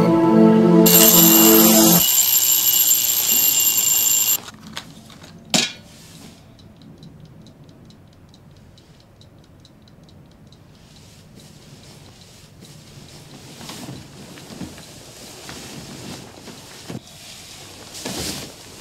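A bell alarm clock rings loudly for about three seconds and stops at once, followed by a sharp knock. A clock then ticks softly and steadily for a few seconds, then faint rustles.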